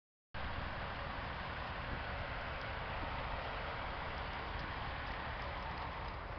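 Steady rushing background noise with a low rumble, even throughout, with no distinct events.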